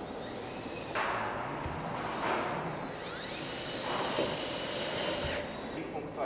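Power tools on a construction site, whining as they speed up and slow down in several bursts, with one steady high whine that cuts off near the end.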